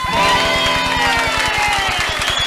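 A live samba band ends a song on a held note while the crowd cheers.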